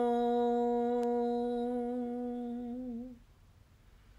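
A woman chanting Om, holding the hum on one steady pitch; it wavers slightly and stops about three seconds in.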